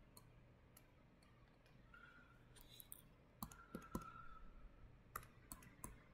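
Faint, scattered clicks and taps of a stylus writing on a drawing tablet, busiest a little past the middle, over quiet room tone.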